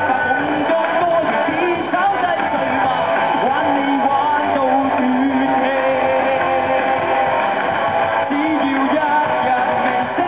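Live rock band playing a song: a man singing over electric guitars and the rest of the band, amplified through the stage PA.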